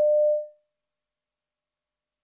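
A single short electronic tone at one steady pitch, fading out about half a second in. It is the signal that marks the start of each extract in the test recording.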